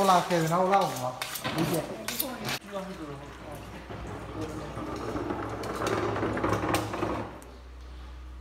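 Metal clinking and knocking for the first few seconds, then a forklift's lift motor running steadily for about three seconds and cutting off suddenly near the end, leaving a faint low hum.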